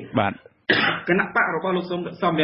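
Only speech: a voice reading Khmer news narration, with a short pause about half a second in.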